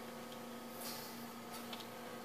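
Faint steady hum of a running desktop computer: a low even tone under light hiss.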